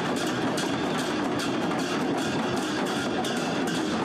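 Rapid, uneven percussive knocks and clacks, several a second, over a steady crowd din.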